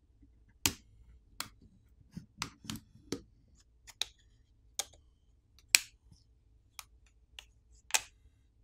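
Plastic catches of a OnePlus Nord CE 3 Lite's plastic back housing popping free from the frame as a plastic pry pick is worked around its edges: about a dozen short, sharp clicks at uneven intervals, the loudest about a second in and near the six-second mark.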